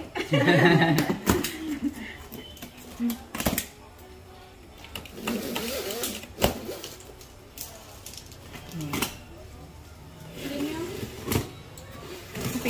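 Packing tape on a cardboard box being slit and torn with a small cutter, with scraping stretches and a few sharp clicks a couple of seconds apart.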